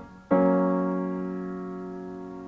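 A major chord struck once on a piano about a third of a second in, held and slowly fading.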